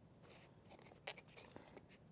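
Faint snips of scissors cutting through a thin craft foam sheet, a few short cuts with the clearest about a second in.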